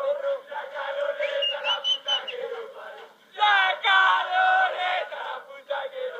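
A group of men chanting and singing together in celebration. A high whistle cuts through about a second and a half in, and the voices get louder from about three and a half seconds to five seconds.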